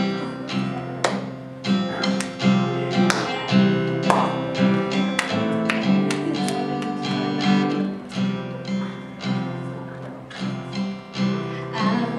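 Acoustic guitar strumming chords in a steady rhythm: the instrumental intro of a worship song.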